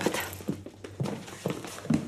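Footsteps of a person walking away, about two steps a second.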